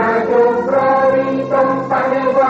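A choir singing with musical accompaniment, in long held notes that change every half second or so.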